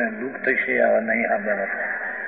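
Only speech: a man lecturing in Gujarati, his voice trailing off shortly before the end.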